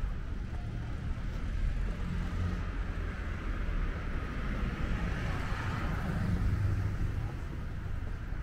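Street traffic: a car passes, its tyre and engine noise swelling and fading in the second half, over a steady low rumble of traffic.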